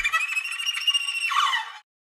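Tail of an animated logo sting: high, bright electronic music and sound-effect tones, ending with a quick falling sweep about a second and a half in and then cutting off.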